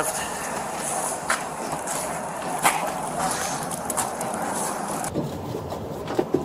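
Steady outdoor background noise with vehicles around, picked up by a police body-worn camera, with a few short rustles and clicks. Near the end the background cuts abruptly to a different noise.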